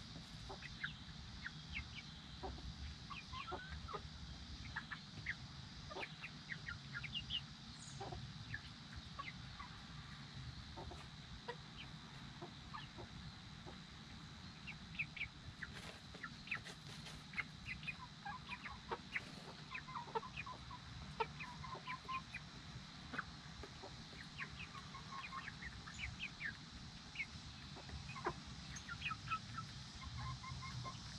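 Small flock of young Silkie chickens peeping and clucking softly, many short scattered calls that grow busier in the second half as the birds bunch together on the ground.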